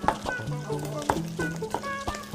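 Broad-bladed kitchen knife striking a wooden cutting board while julienning carrot, a couple of strikes about a second apart, with oil sizzling in a pan underneath.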